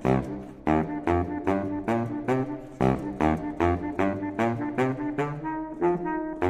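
Solo baritone saxophone (a Selmer Super Action 80 Series II) playing a driving, funk-style line of short, punchy notes, about three a second, leaping back and forth between low notes and higher ones.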